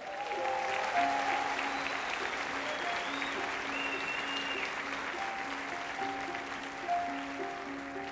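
Audience applauding while a Yamaha grand piano plays slow, held notes underneath.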